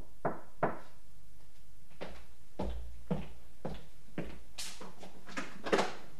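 Knocks on a door, three quick raps right at the start. They are followed by a run of duller thuds, about two a second, with a sharper clack near the end.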